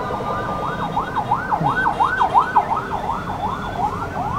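Emergency-vehicle siren in a fast yelp, its pitch sweeping rapidly up and down about three to four times a second, heard from inside a car over low road rumble.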